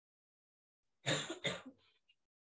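A person coughing twice, about a second in, with two short, sharp coughs in quick succession and a faint trailing one.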